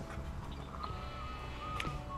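Faint outdoor background: a steady low rumble with a few light clicks, and a thin faint tone held for about a second near the middle.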